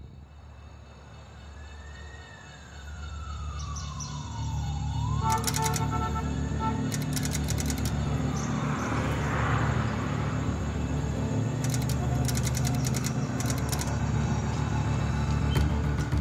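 A single siren wail that rises, falls and rises again over a soundtrack with a steady beat. The music gets louder a few seconds in.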